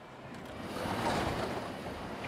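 Subway train noise, a steady rushing that swells over the first second and then holds.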